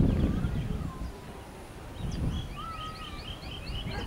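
Small birds calling in the scrub: a quick series of high chirps, about five or six a second, through the second half, with a short whistled note among them. Two bursts of low rumbling noise, at the start and about halfway, are louder than the birds.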